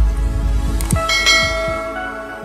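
Intro music sting for an animated logo: short hits with deep falling sweeps, then about a second in a bright chime-like tone rings out and slowly fades.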